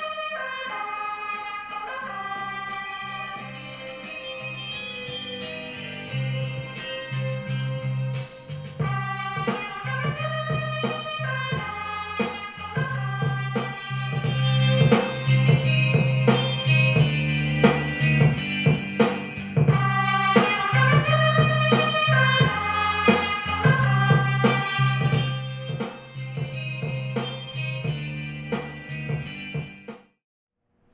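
A song played through a pair of Simple Audio Listen Bluetooth desktop speakers, picked up by a camera's built-in microphone: held keyboard-like notes at first, then a beat comes in about nine seconds in and the music gets louder.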